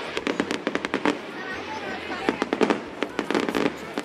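Aerial fireworks crackling and popping, many sharp reports coming in rapid irregular clusters.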